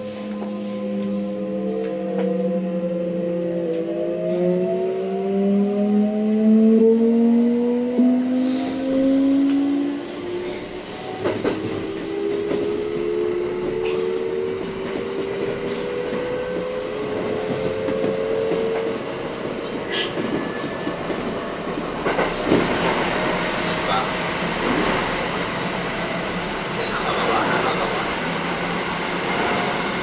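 Kintetsu electric train accelerating away from a station, its traction motors whining in several tones that climb in pitch in steps over the first twenty seconds. After about twenty seconds the whine fades under a louder, denser rumble of wheels on rail as the train runs into a tunnel, with occasional clicks.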